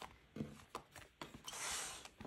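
Binders handled on a wooden desk: a few soft knocks as they are picked up, then a rubbing slide across the desktop near the end.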